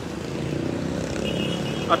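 Steady street traffic noise from vehicles running on the road below.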